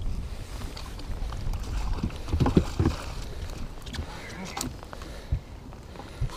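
Rain falling on the lake and a fishing boat, with wind rumbling on the microphone and a few knocks on the boat about two to three seconds in and again near the end.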